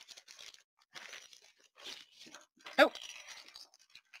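A small translucent bag rustling and crinkling in several short bursts as it is handled and its contents are taken out.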